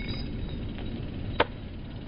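A single short, sharp knock about one and a half seconds in, over a low, steady rumble.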